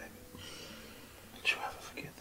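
A soft, breathy whispered voice, briefly about one and a half seconds in, over a faint steady background tone.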